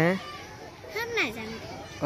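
A child's voice calls out once about a second in, rising then falling in pitch, over faint outdoor background noise.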